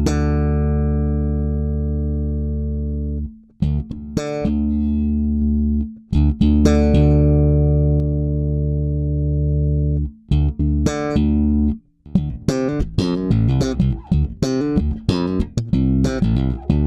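Electric bass played through an Aguilar TLC Compressor pedal set for heavy compression: several long sustained notes held at an almost unchanging level, then from about twelve seconds in a quick run of short notes with sharp, clicky attacks.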